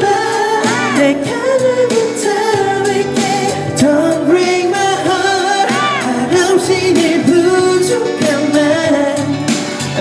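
Male singer singing a K-pop ballad live into a handheld microphone over an amplified recorded backing track, with held, wavering notes about one second and six seconds in.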